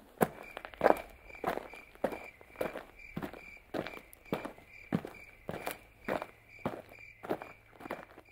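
Footsteps of a person walking at a steady pace, about one and a half steps a second.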